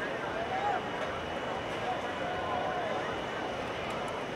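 Indistinct, distant voices of people in a stadium over a steady background noise. No words are clear.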